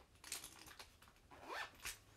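Faint handling noise: three short scraping rustles of objects being moved close to the microphone, the middle one with a quick upward sweep.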